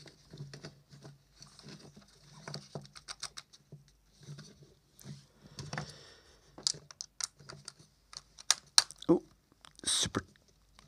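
Handling noise from a plastic head torch being turned over on a bench: scattered small clicks, taps and brief rustles of the housing and headband. Several sharper clicks come near the end as a small screwdriver is fitted to a screw in the lamp head.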